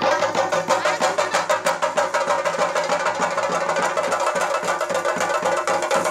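Theyyam percussion: chenda drums beaten in a fast, steady, unbroken rhythm, with sharp strokes ringing high.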